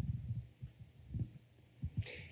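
A pause with several soft, low thumps at irregular intervals, of the kind made by handling a microphone.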